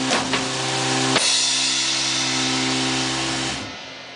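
Live rock band ending a song: two drum and cymbal hits while electric guitar and bass hold a final chord that rings on, then dies away about three and a half seconds in.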